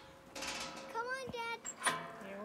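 Metal latch hardware on the rear of a trailer being worked: a scraping rattle, then a sharp click near the end. A child's high voice sounds briefly in between.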